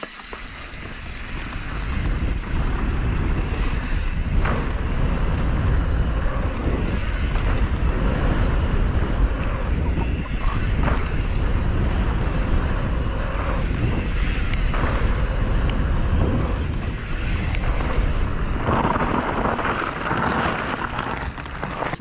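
Wind rushing over a helmet-mounted GoPro and mountain bike tyres rolling fast on a dry dirt trail, building over the first couple of seconds, with scattered knocks and rattles from the bike over bumps.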